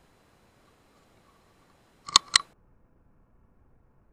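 Two sharp clicks about a fifth of a second apart, a little past the middle, over a faint hiss.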